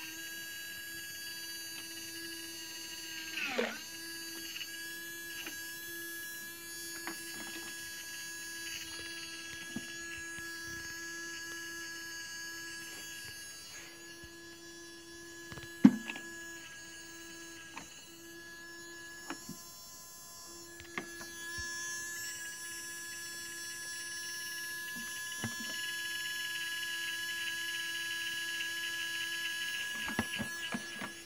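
Small electric motor of a modified Miele W1 toy washing machine humming steadily as it runs a wash, with scattered light clicks and one sharp knock about halfway through.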